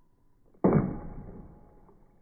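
A sword blade slicing through a water-filled plastic jug: one sharp hit about half a second in, followed by a splash of water that fades away over about a second.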